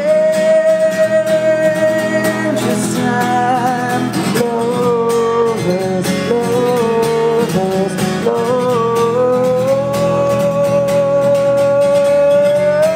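A man singing long held notes over a strummed acoustic guitar. The voice holds a high note for the first couple of seconds, drops lower in the middle, and climbs back to a long held note near the end.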